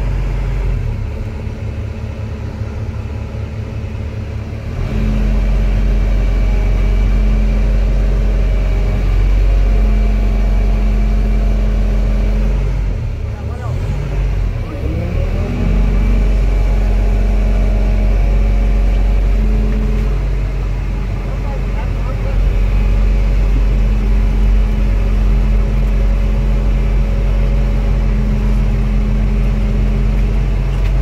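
Hydraulic excavator's diesel engine and hydraulics heard from inside the cab, working under load as the boom and bucket dig and lift. The engine note steps up about five seconds in, sags and swings back up around the middle, then holds steady.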